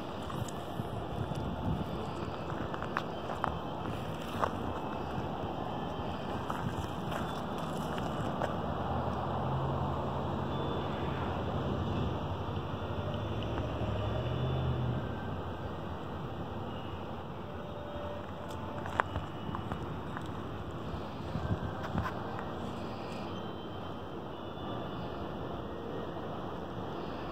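Steady outdoor noise of wind on the microphone beside a flowing stream, the low rumble swelling for a few seconds in the middle, with a few scattered sharp clicks.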